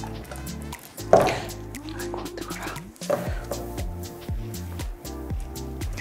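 Background music, with scattered light clicks and scrapes of a spatula against a stainless steel saucepan as caramel-coated hazelnuts are scraped out onto a mat.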